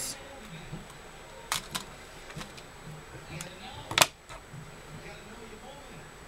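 A few sharp clicks and taps of small craft tools and supplies being handled on a tabletop, the loudest about four seconds in.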